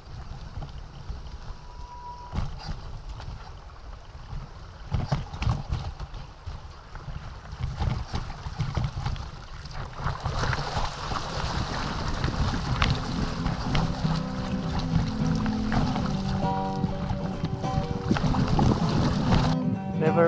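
Wind rumble on the microphone and the rattle of a bicycle riding a rough dirt and stone track, with scattered knocks. Music with steady notes fades in about two-thirds of the way through and grows louder.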